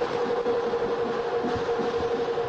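Music with one long held note over a steady hiss.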